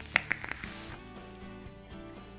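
Background music, with a few sharp clicks in the first half second followed by a brief airy hiss as a vape is drawn on.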